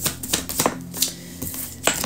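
A tarot deck being shuffled by hand, with a few irregular sharp card clicks and taps, the loudest near the end as a card is laid on the wooden table.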